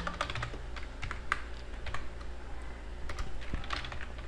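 Typing on a computer keyboard: irregular keystroke clicks, a few each second.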